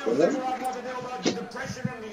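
Voices with no clear words, with a sharp click a little over a second in.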